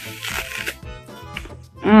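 Crunch of a bite into a crisp Fuji apple, loud in the first second, followed by a few softer chewing crunches and a hummed "mm" near the end.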